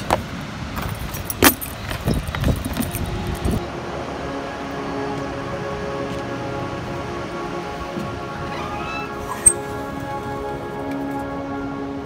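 Handling clatter with a sharp click about a second and a half in, as the outdoor shower's hand sprayer is put back in its wall box. From about four seconds on, soft background music with held chords.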